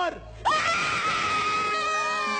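A woman screaming with joy: one long, high scream that starts about half a second in and is held steady.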